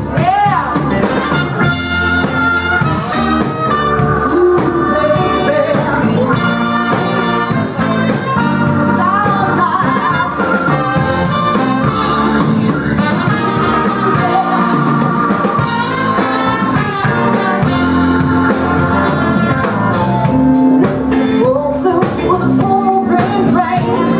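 Live blues band playing an instrumental passage with drums and a lead instrument holding and bending sustained notes.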